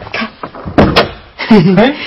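A door shutting with a sudden thump and a sharp click just under a second in.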